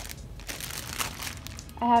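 Faint rustling and crinkling of a plastic-wrapped tube of Aida cloth being pulled out of a fabric tote bag, with a woman's voice starting near the end.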